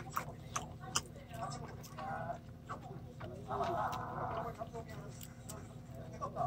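Close-miked chewing of a mouthful of sauce-glazed pork trotter (jokbal), with scattered wet mouth clicks and smacks.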